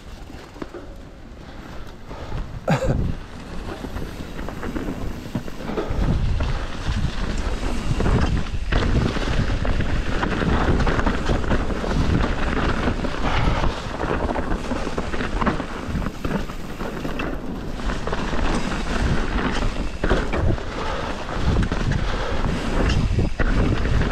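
Mountain bike riding down a dirt trail: wind rushing over the camera microphone and tyres rumbling on the ground, with a few sharp knocks and rattles from the bike over bumps. It gets much louder about six seconds in as the speed picks up.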